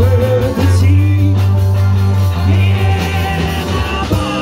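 A live rock and roll band playing loud, with a heavy bass line, drums and electric guitar.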